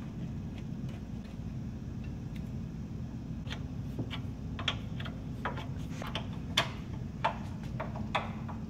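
Wrench work on the rear brake-line flare nut and bracket of a Jeep Wrangler JK: scattered, irregular light metallic clicks and ticks of the wrench on the fitting, over a steady low hum.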